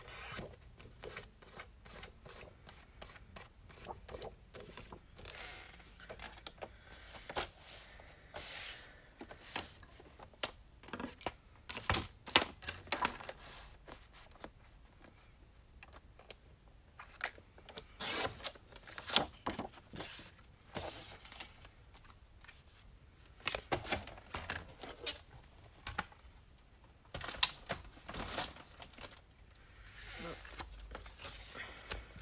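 Craft paper being handled on a scoring board: irregular rustles, scrapes and light taps, with a few sharper clicks about twelve seconds in and near the end.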